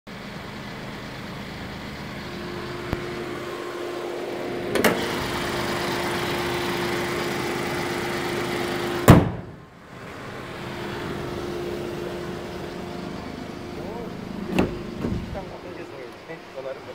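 Kia Morning's small petrol engine idling steadily, with a held hum. A single loud slam comes about nine seconds in, then the hum returns, with a few lighter clicks.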